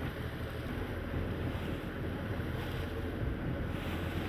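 Wind buffeting the microphone over a choppy sea, with waves washing and a steady low rumble.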